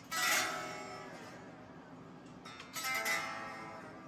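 Electric guitar, an Epiphone Les Paul Studio, strummed twice about two and a half seconds apart, each chord left to ring and fade.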